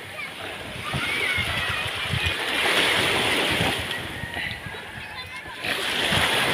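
Sea water splashing and lapping around a wooden outrigger boat in shallow water, with a few low knocks and faint voices in the background.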